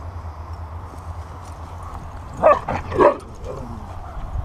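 A husky barking twice, two short barks about half a second apart in the second half, over a steady low rumble.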